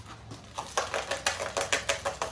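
A pair of dice rattling as they are shaken in cupped hands: a quick, irregular run of small hard clicks that starts a little under a second in.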